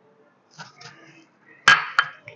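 A small ceramic bowl knocking against a glass mixing bowl as flour is tipped in: one sharp clink with a brief ring near the end, then a lighter click.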